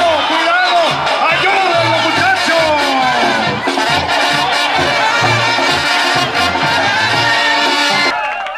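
Lively brass-band music with a steady, regular bass pulse under the melody, over crowd noise.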